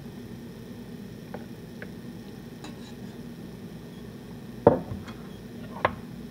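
A metal spoon knocking and clinking against a stainless mesh sieve full of wet rose petals: a few light clicks, then two sharp clinks near the end, the first the loudest, over a low steady hum.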